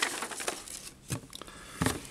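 Small cardboard cubes tumbling out of a box and knocking onto a tabletop, with paper rustling between. A few light knocks, the loudest near the end.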